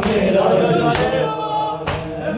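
Men's voices chanting a noha (Urdu mourning lament) together in chorus, with sharp slaps of chest-beating (matam) landing in unison about once a second, twice here.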